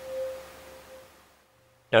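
Tuning fork ringing at the mouth of a glass tube standing in water, the tube's air column resonating with it. One steady pure note that swells just after the start and fades away over about a second and a half.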